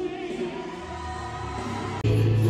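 Gospel music with a choir singing sustained notes.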